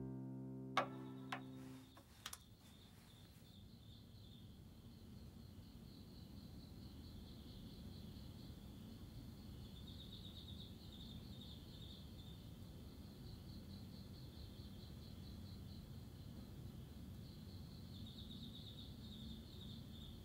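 Faint night ambience of insects chirping in rapid pulsing trills over a low, steady hum. It swells a little twice. The last notes of a piano die away in the first two seconds, with a few sharp clicks.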